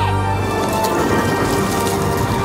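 Orchestral background score with held chords, swept by a short falling glide, then a dense rumbling percussion swell with crashing cymbals.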